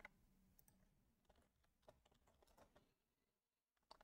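Near silence with a few faint, scattered computer keyboard key clicks.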